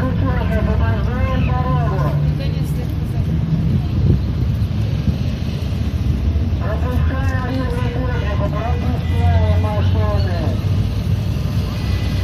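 Engines of a column of 1960s-era Soviet vehicles approaching, led by a GAZ-69 jeep: a steady low rumble that grows louder in the second half, with a voice over it.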